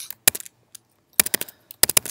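Laptop keyboard keystrokes in three quick clusters of sharp clicks: a few at the start, more a little past one second, and another run just before the end, as keys are pressed to switch between applications.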